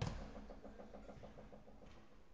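A football kicked once, a single sharp thud at the start that rings briefly in the hall, then only faint background noise.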